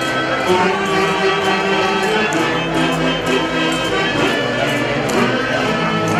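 Live Tunantada dance music from an orquesta típica, wind and string instruments playing a steady melody, with a light regular tapping beat.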